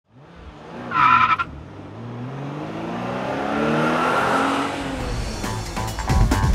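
Car sound effect: a short tire screech about a second in, followed by an engine revving up and then falling away. Music comes in near the end.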